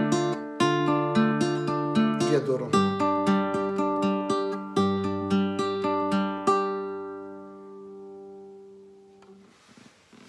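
Nylon-string classical guitar fingerpicked in a steady chord arpeggio, about three notes a second. The chord changes to a lower bass note about three seconds in. The playing stops partway through and the last chord rings out and fades.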